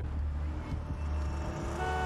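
Car engine rumbling low and steadily from a TV episode's soundtrack; near the end a steady pitched tone sets in.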